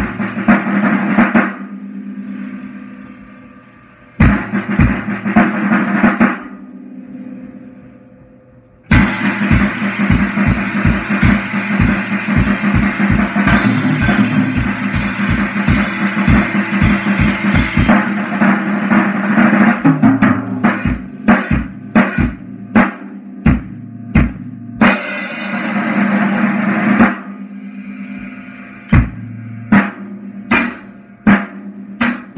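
A drum kit played with sticks in irregular bursts. It opens with short fills whose hits are left ringing and dying away. About a third of the way in comes a long stretch of fast, dense strokes, then scattered single hits, a swell rising for a couple of seconds, and a last few strokes near the end.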